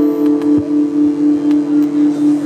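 Sustained musical drone: a low note held steady with an even pulse in its loudness, about three beats a second, and a higher note held over it.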